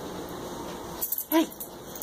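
A boxer dog gives one short excited whine, its pitch rising and falling, about a second in, just after a brief metallic jingle.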